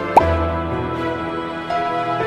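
Soft instrumental background music with held notes. About a fifth of a second in, a single pop sound effect cuts across it: a sharp click with a quick downward-sliding tone.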